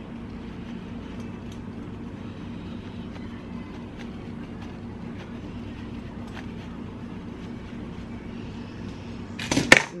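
Hard Parmesan cheese grated on a flat metal hand grater: a steady scraping rasp with a few faint ticks, ending in a short clatter near the end.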